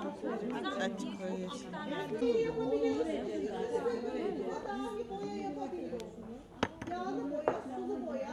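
Indistinct chatter of several voices talking over one another, with a couple of short sharp clicks about six seconds in.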